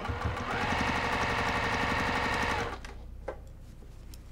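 Electric domestic sewing machine stitching a binding strip onto a quilted stocking top, the needle going in a fast, even rhythm. It speeds up in the first half second, runs steadily, then stops nearly three seconds in, followed by a single click.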